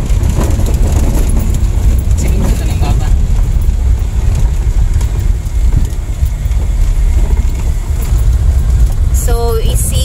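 Steady, loud low rumble of a vehicle's engine and tyres on a rough unpaved dirt road, heard from inside the cabin. A voice joins about nine seconds in.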